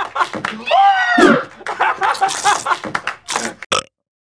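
Excited wordless shouting and whooping from people, with some laughter. The voices slide up and down in pitch and cut off abruptly just before the end.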